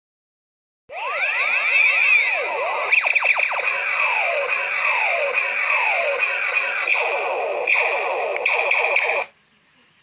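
Battery-powered light-up toy playing an electronic sound effect: rapid falling siren-like sweeps over a steady high tone. It starts about a second in and cuts off suddenly about nine seconds in.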